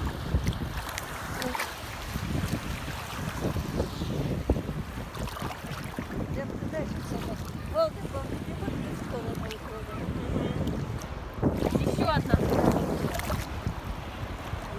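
Choppy sea water sloshing and splashing close to the microphone as waves roll past swimmers, with wind buffeting the microphone. A louder surge of water near the end, and brief faint voices now and then.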